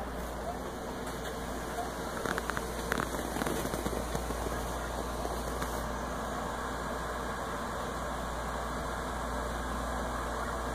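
Steady background hiss with a constant low hum, and a few faint clicks about two to three seconds in.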